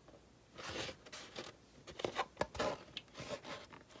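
Hard plastic welding helmet shell being handled and turned over by hand: a run of irregular rubbing, scraping and small clicks starting about half a second in.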